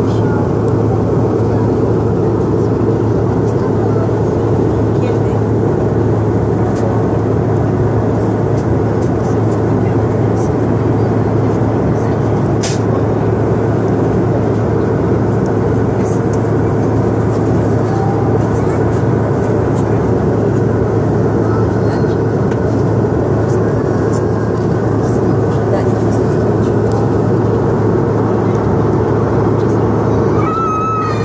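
Steady cabin noise of an airliner in flight: engine and airflow noise with a low hum.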